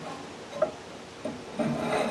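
Metal angle-iron stems scraping and rubbing against a mounting box as the box is pushed down onto them in a snug fit. There is a light knock about half a second in, and heavier scraping starts about a second and a half in.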